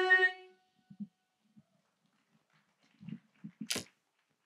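The final held note of a women's vocal group fades out about half a second in. Then faint low thumps and a sharp click near the end as handheld microphones are lowered and set back into their stands.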